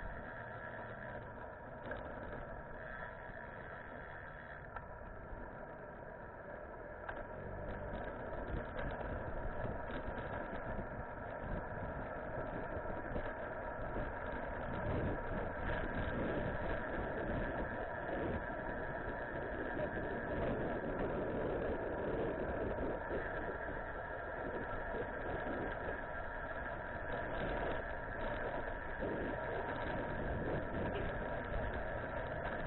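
Wind and road noise from riding a bicycle, picked up by a bike-mounted camera, with a steady whine of several tones underneath. It grows louder about eight seconds in.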